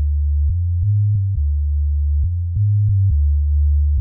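Hip-hop track breakdown with only a deep, sine-like bass line playing, moving between a few low notes in a repeating pattern, with a faint click at each note change.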